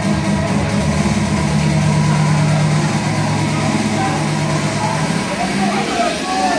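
Loud club dance music in a breakdown: the kick drum drops out shortly after the start, leaving a sustained low bass drone under crowd noise. High gliding sounds rise and fall near the end.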